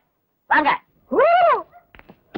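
An animal's two short high-pitched cries, the second rising and then falling in pitch.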